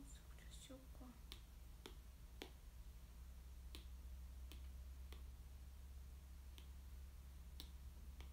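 Light fingernail taps on a smartphone screen, irregular, roughly one a second, over a low steady hum. A faint murmured voice in the first second.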